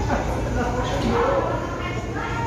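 Indistinct voices of people talking nearby, with a few high pitched sounds, over a steady low rumble.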